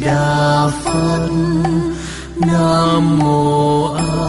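Slow melodic Buddhist chanting: long held notes sung in phrases about a second and a half long, with short breaks between them.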